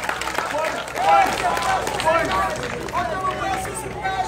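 People's voices speaking and calling out, at times over one another.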